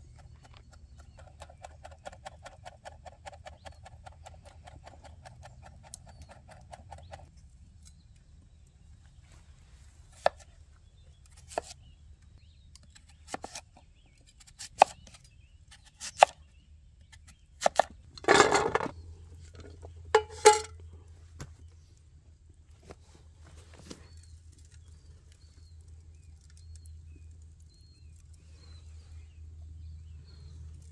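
Large kitchen knife chopping herbs on a wooden cutting board in quick, regular light strokes for the first several seconds. After a pause come about nine separate, sharper knife cuts through kumara (sweet potato) down onto the board, a second or two apart, the loudest near the middle.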